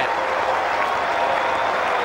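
Cricket crowd applauding a batsman's attacking shot as the ball runs away to the boundary, a steady even clapping.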